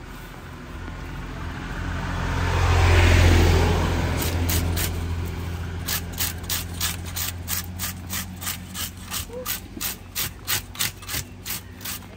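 A passing road vehicle swells to its loudest about three seconds in and fades. From about six seconds in, a hand scale scraper is drawn over the skin of a giant trevally in quick rasping strokes, about three a second, taking off the scales.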